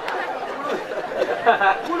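Audience laughter and chatter dying down, many voices overlapping, with a man's voice speaking again near the end.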